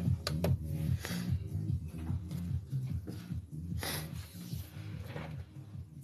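Background music with a steady low bass line, and a few light clicks about half a second in.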